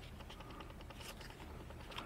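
Faint handling noise: a stapled cardboard 2x2 coin holder being turned over in the fingers, with a small click just before the end.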